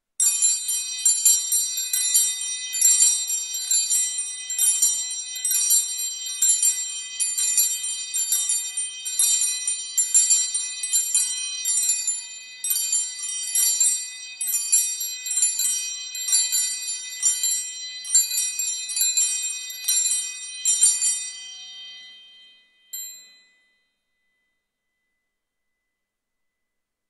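A set of altar bells shaken over and over, a bright jingling ring repeating about every two-thirds of a second, then dying away with one last light ring near the end. It is rung during the blessing with the monstrance, marking the Eucharistic benediction.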